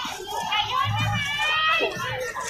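Crowd of fans chattering and calling out in high voices, many voices overlapping at once.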